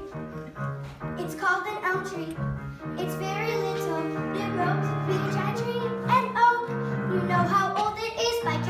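Children singing a musical-theatre song over an instrumental accompaniment of long held chords.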